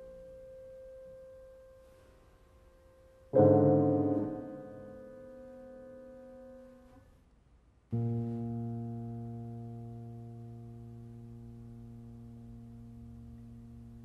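Two pianos playing sparse, isolated chords, each struck once and left to ring. An earlier chord is dying away, a new chord enters about three seconds in and is cut off around seven seconds, and a lower, fuller chord just before eight seconds keeps ringing, fading slowly.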